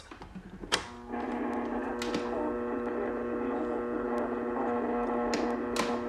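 A click, then from about a second in a steady hum from a 1926 Freshman Masterpiece radio's 1920s loudspeaker, with a few more faint clicks. The hum comes from powering the tube filaments through a 6-volt AC transformer and rectifier instead of a battery.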